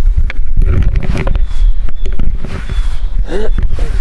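Loud, uneven rumbling and rustling on a handheld microphone as it is held and moved about.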